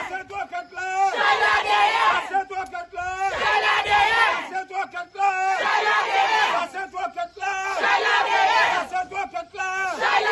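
A crowd of protesters chanting in unison: loud group shouts of about a second and a half, repeating roughly every two seconds in a steady rhythm, with shorter single-voice phrases between them.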